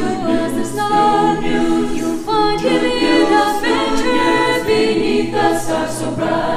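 Mixed choir singing a gospel-style Christmas spiritual in harmony, in held chords that change every second or two.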